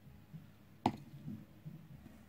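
Quiet room tone with one sharp click a little under a second in and a few soft, low knocks.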